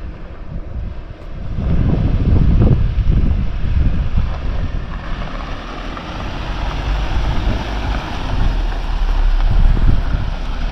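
Wind buffeting the microphone in heavy low gusts. Under it, a Jeep Wrangler driving on a dirt trail grows louder as it approaches, its tyre and engine noise building through the second half.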